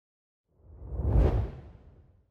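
Whoosh sound effect for an intro logo reveal: a single deep swell that builds from about half a second in, peaks with a brief high hiss, and fades away near the end.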